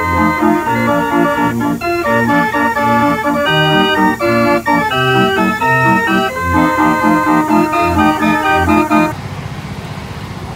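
Late-1920s Wurlitzer military band organ playing a tune, with changing melody notes over a bass line. About nine seconds in it cuts off suddenly, giving way to a quieter steady noise.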